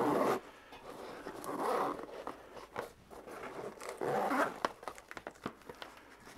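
A zipper on a nylon Maxpedition pouch being pulled open around its edge in three long strokes. Small clicks and taps come between the strokes.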